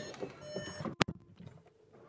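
A faint high electronic tone inside a car's cabin, then a single sharp click about a second in.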